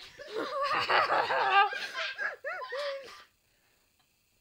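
High-pitched laughing, a rapid run of wavering ha-ha-ha's that goes on for about three seconds and then stops.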